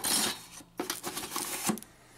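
Loose plastic drive rails, bay covers and metal shielding clattering as a hand rummages through a cardboard box of computer parts. A rustling scrape at the start is followed by a few light clicks and rattles, which die away near the end.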